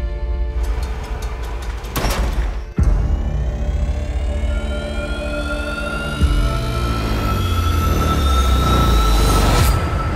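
Dark, dramatic trailer score: a deep low drone with sudden heavy hits about two, three and six seconds in, and a rising whine that climbs through the second half to a peak just before the end.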